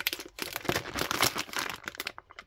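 Plastic Haribo sweet bag crinkling as it is handled, a dense run of small crackles.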